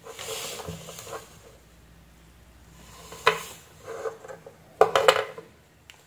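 Wires and a metal alligator clip handled and clipped onto a terminal: soft rustling, a sharp click about three seconds in and a few quick clicks near the end.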